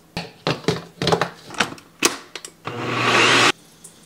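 A series of sharp clicks and knocks, then a NutriBullet blender motor runs briefly, blending pancake batter, and cuts off suddenly near the end.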